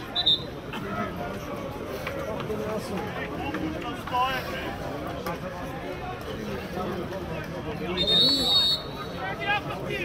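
Indistinct chatter of spectators in the stands at a soccer match. A short high whistle chirp comes just after the start, and a steadier whistle blast, just under a second long, comes about eight seconds in, fitting a referee's whistle at the substitution.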